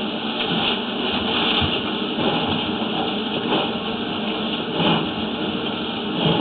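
Sewer inspection camera head and push cable moving along a drain pipe: a continuous scraping, rattling noise with scattered light knocks.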